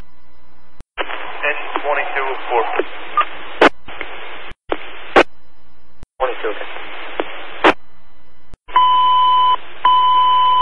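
Fire dispatch radio heard through a scanner: transmissions key up and drop out, each a burst of radio hiss ending in a squelch click, with faint garbled voice in the first few seconds. Near the end, a steady beep sounds twice, a dispatch alert tone.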